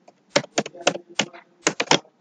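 Computer keyboard being typed on: about eight separate keystrokes at an uneven pace, spelling out one word.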